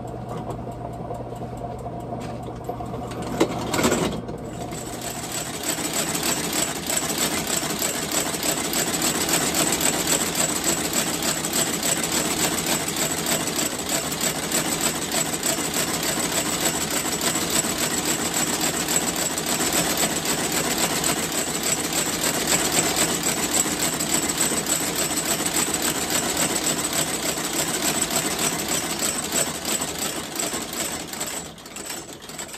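Outsole stitching machine sewing a boot's sole to its welt: a low hum for the first few seconds, a knock about four seconds in, then the rapid, steady clatter of the machine stitching.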